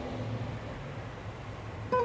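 Background acoustic guitar music at a lull between phrases, with a low steady tone underneath. A new plucked note sounds sharply near the end.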